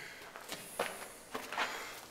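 A few footsteps on a floor strewn with loose debris.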